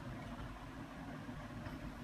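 Faint, steady low background hum with no distinct events.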